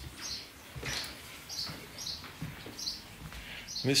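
A small bird chirping over and over in short, high notes a few times a second, with faint footsteps underneath.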